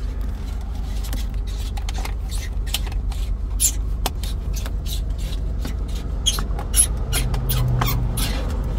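Irregular small clicks and scratches of fingers working at the plastic cupholder and console trim of a car, over a steady low rumble.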